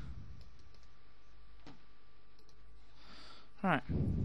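A few faint computer mouse clicks over a steady low hum.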